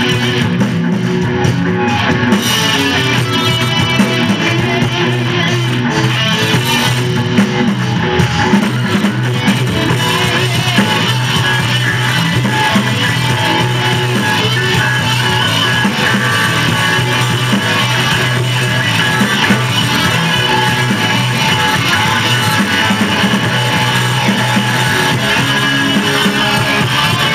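A rock band playing live: electric guitars, bass and drum kit, loud and steady throughout.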